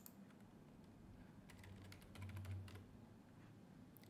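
Faint clicking of a computer keyboard and mouse, with a quick run of keystrokes about two seconds in.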